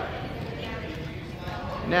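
Gym room noise with faint background voices and light, irregular knocks and shuffles from two people sparring at pad work; no loud glove-on-mitt impacts.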